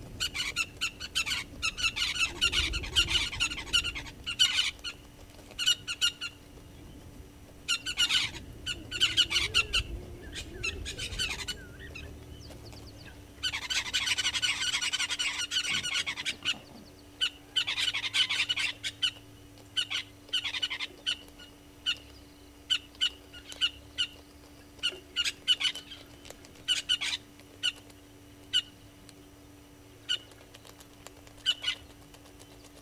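Wild birds calling in the bush: bouts of dense, overlapping chattering calls, the strongest about fourteen to sixteen seconds in. In the last third, single short calls repeat at fairly regular intervals. A faint steady low hum lies beneath.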